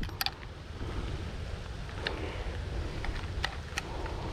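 Steady low wind rumble on the microphone, with a few faint, sharp clicks of handling as a fish is hooked onto a handheld digital scale.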